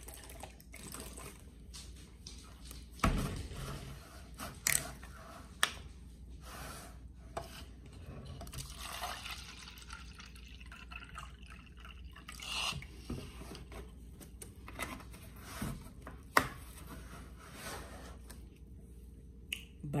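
Fruit juice poured from a plastic gallon jug into a plastic cup, with a gurgling hiss of liquid in the middle. A few sharp clicks and knocks come from handling the jug, its cap and the cup.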